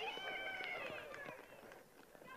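A faint, high-pitched voice calling out from the field or stands, wavering and fading away within the first second, over quiet ballpark background.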